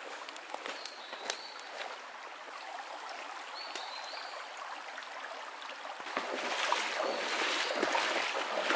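Shallow stream running over rocks, with two brief high whistles early on; from about six seconds in, feet splash loudly through the water as someone wades up the creek.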